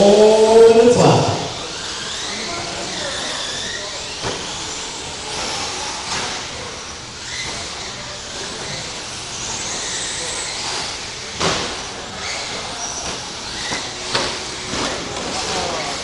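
Radio-controlled 2WD short course trucks racing: high motor whines rising and falling over a steady hiss, with a few sharp knocks, the loudest about eleven seconds in.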